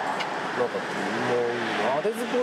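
Car traffic passing on a city street, with a man's voice over it.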